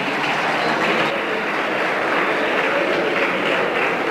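Applause from a group of parliamentary deputies, steady clapping that keeps an even level throughout.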